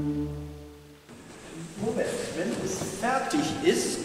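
A choir's final held chord dying away in a large, echoing church over about the first second, followed by a man's voice from about two seconds in.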